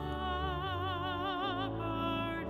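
A solo voice sings sustained notes with wide vibrato over steady, held organ tones: a hymn sung during the offertory of the Mass.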